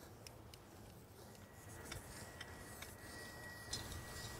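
Faint, scattered ticks and clicks of rope-rescue hardware (pulleys and carabiners) as rescue rope is hauled through a 5:1 pulley system, over a low, quiet background.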